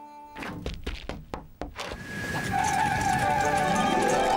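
A run of sharp knocks, then a louder steady noise as a cartoon windmill's sails start up and turn, under background music.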